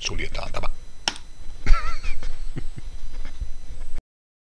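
Several sharp clicks from a computer keyboard and mouse, with a voice heard in short snatches between them.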